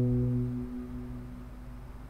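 A single plucked (pizzicato) cello note ringing on and fading away over about a second, leaving only faint room noise.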